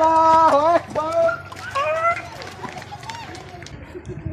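Loud shouting voices: a drawn-out yell that falls in pitch at its end in the first second, then two shorter calls. After that the level drops to quieter background noise with scattered faint clicks.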